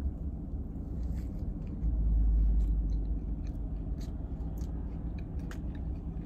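A mouthful of cookie topped with pretzel pieces being bitten and chewed, with scattered small crunches and mouth clicks. A low rumble rises about two seconds in and lasts about a second.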